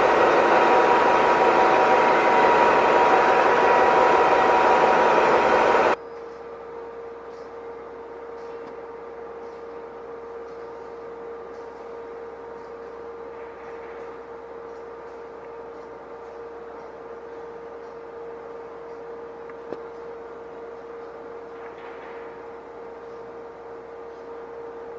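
Loud heavy machinery beside a mining haul truck, a dense noise with steady whining tones, cuts off abruptly after about six seconds. It gives way to a much quieter, steady mine-site hum with one constant tone.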